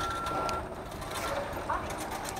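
Self-service checkout machine giving one steady electronic beep of about half a second, as the screen prompts the shopper to take their change, over the murmur of a busy store.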